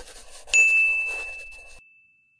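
A single bright notification ding sound effect, of the kind that goes with clicking a Subscribe button. It strikes about half a second in and rings out on one clear tone, fading away over about a second and a half. A scratchy pen-writing sound effect runs underneath at the start.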